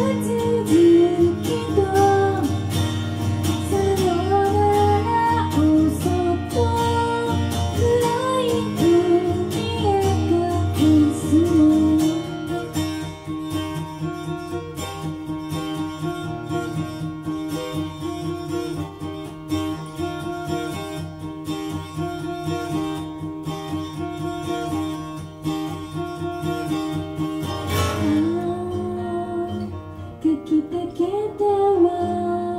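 A woman singing to her own strummed acoustic guitar in a live performance. About twelve seconds in the voice stops and the guitar carries on alone, more quietly, until the singing comes back near the end.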